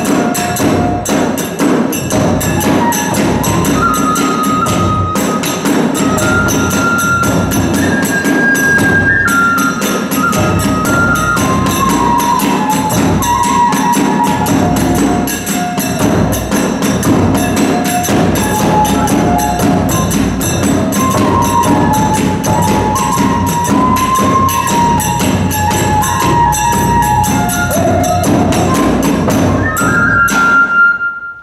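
Hiroshima kagura accompaniment: a bamboo transverse flute (fue) plays a stepping melody over fast, steady beating of the large ōdō drum and ringing hand cymbals (tebyoshi).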